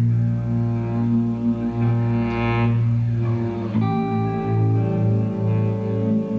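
Live band music led by an electric bass guitar holding long low notes, with sustained higher saxophone notes above. About four seconds in the harmony changes and the bass moves into a repeating pulsing figure.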